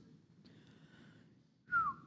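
Faint room tone, then near the end one brief whistle through pursed lips, falling in pitch, from a woman pausing over a question.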